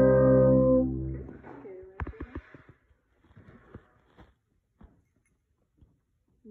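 Brass sextet holding a sustained chord together, a grounding note to tune on, which stops about a second in. Then only a few faint clicks and rustles.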